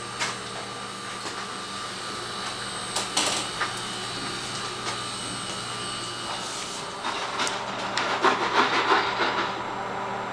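Steady hum and hiss of running laboratory equipment, with a couple of sharp clicks, then a few seconds of irregular clattering and handling noise from about seven seconds in.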